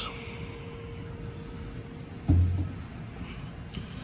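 Quiet workshop background with a faint steady tone, broken by one short, low thud a little over two seconds in.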